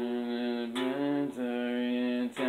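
Wordless singing: a voice holds long, steady notes in a chant-like drone, moving to a new pitch three times within about two seconds.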